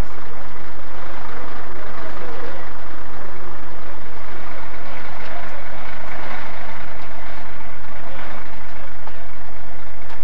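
Indistinct voices of ambulance crew working over a casualty, mixed with vehicle engines running, over a steady low electrical hum.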